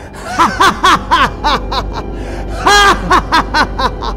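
A man's exaggerated, villainous laughter in a quick run of short "ha" sounds, with one longer one near the end, over sustained dramatic background music.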